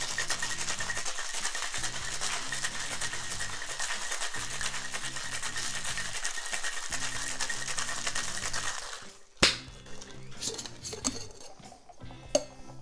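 Ice rattling hard and fast inside a cocktail shaker for about nine seconds. Then a single sharp knock as the shaker is broken open, followed by a few light clinks as the drink is strained out.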